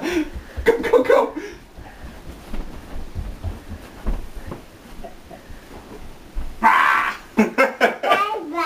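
Family voices shouting and laughing in a small room, with a quieter stretch of low thuds in the middle and a breathy burst of excited voice near the end.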